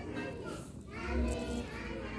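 Children's voices talking and playing, with no clear sound from the cats.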